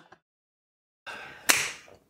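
Dead silence for about a second, then a faint hiss and a single sharp crack about halfway through, dying away quickly.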